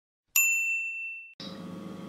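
A single high bell-like ding sound effect on an intro title card, ringing for about a second and then cut off abruptly. Faint room sound follows.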